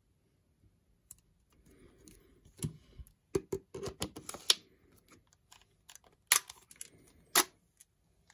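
Nikkor 28mm f/2.8 AI-S lens being twisted by hand onto a Nikon DSLR's metal bayonet mount: a quick run of scrapes and clicks a few seconds in, then two sharp clicks about a second apart near the end.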